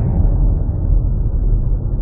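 Cinematic logo-intro sound effect: a deep rumbling boom with a hiss above it that falls in pitch over the first half second, then holds steady.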